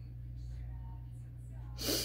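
A person's short, sharp breath close to the microphone near the end, over a steady low hum.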